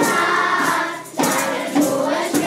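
A group of young children singing a Janeiras (Portuguese New Year carol) together, with a tambourine jingling along. There is a brief dip between phrases about a second in before the singing picks up again.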